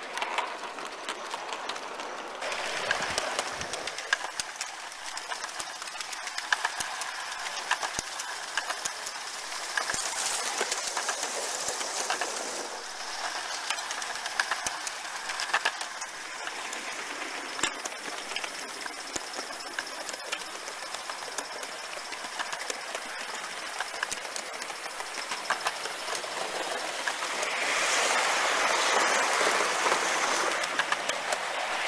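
Gauge One model train running on garden track, heard from a camera riding on one of its wagons: a steady rattle of wheels with frequent small clicks. It grows louder for a few seconds near the end.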